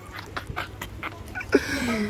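A person panting in quick breathy huffs, about six a second, like a dog.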